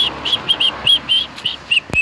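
A bird calling in a quick run of short, high chirps, about four a second, with one sharp click near the end.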